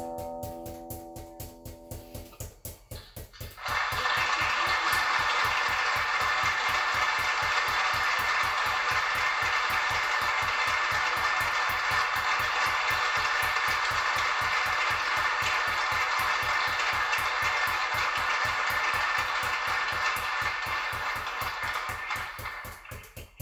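Five juggling balls force-bounced off a hard surface in a fast, even rhythm of about four bounces a second, under background music. A few guitar notes fade out at the start, and a loud, dense stretch of music comes in about four seconds in and cuts off near the end.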